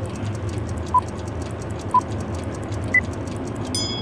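Countdown timer sound effect: fast clock ticking with a short beep once a second, the last beep higher in pitch, then a brief ringing tone near the end signalling that time is up.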